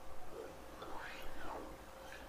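Faint film dialogue playing quietly in the background, a voice heard low and indistinct in short phrases.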